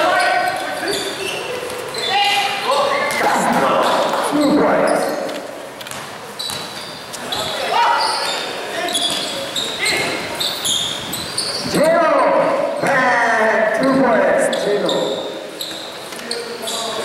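Indoor basketball game in a large echoing gym: voices of players and spectators shouting and calling over one another throughout, with the ball bouncing on the court.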